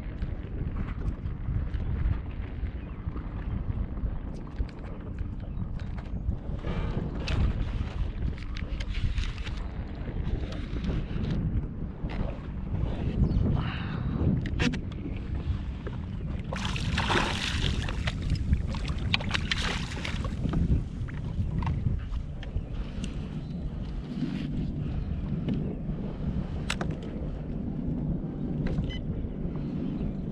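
Wind on the microphone and choppy water lapping against a plastic kayak hull, a steady low rush with scattered small knocks. A brief, louder burst of noise comes a little past halfway.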